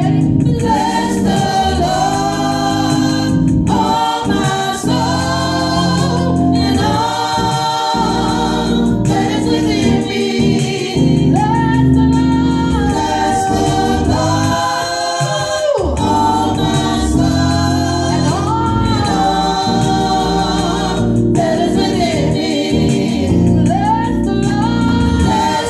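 A small church choir singing gospel music in sustained, held phrases over keyboard accompaniment.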